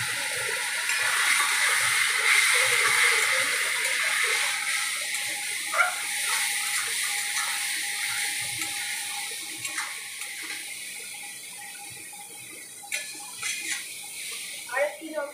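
Water just added to hot masala in an aluminium kadai sizzling with a strong hiss that slowly dies away as the pan cools. A metal spatula knocks and scrapes against the pan a few times.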